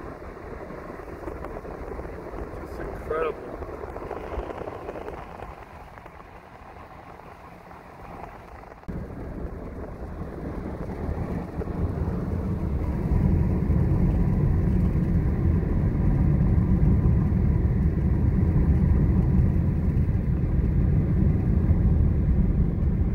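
Road and wind noise of a car driving along, with a faint brief pitched sound about three seconds in. About nine seconds in it cuts to a louder, deeper rumble that grows again a few seconds later and holds steady.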